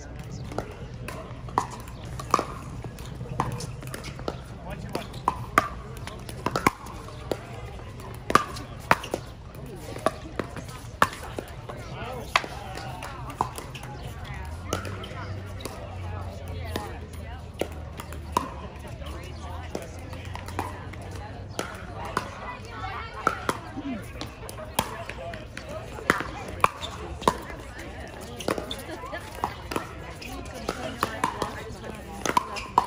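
Pickleball paddles striking plastic balls in irregular sharp hits, about one or two a second, from this and neighbouring courts, over a background of people's voices.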